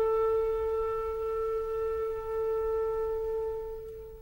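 Solo wind instrument in a slow, plaintive film-score melody, holding one long note that fades near the end.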